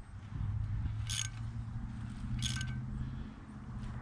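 A ratchet wrench clicking in two short bursts, about a second in and again about two and a half seconds in, as nuts are run down on the flange bolts of a fire hydrant extension. A steady low hum runs under it.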